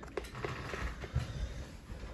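Faint handling noise from a Veto Pro Pac Tech Pac tool backpack: a hand moving over its fabric pockets and zippers, with a few light clicks near the start.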